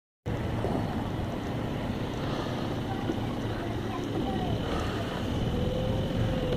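Small engine running steadily with a low rumble.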